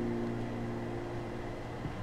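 Background music: a held acoustic guitar chord ringing and slowly fading.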